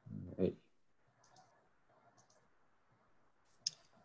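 Computer mouse clicks: two faint clicks, then a sharper one near the end.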